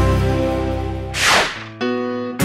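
Background music with a whoosh sound effect that falls in pitch a little past a second in, used as an edit transition. The music then breaks off sharply and a new, plucked-guitar piece begins.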